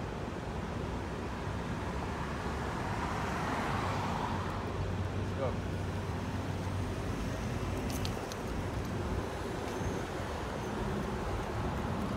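City street traffic: steady engine hum and road noise from cars at an intersection, swelling as a vehicle passes about four seconds in.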